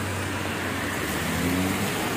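Steady hiss of a heavy downpour, with car tyres swishing on the flooded road as traffic passes; the hiss swells a little about halfway through.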